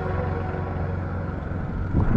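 A steady low rumble with faint hiss, with no clear music or speech.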